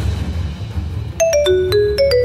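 Mobile phone ringing with a marimba-like ringtone: a quick run of bell-like notes breaks off, and the same phrase starts again a little over a second in, over a low steady rumble.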